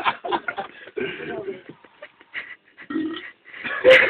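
Indistinct voices talking in short bursts, with brief pauses, louder near the end.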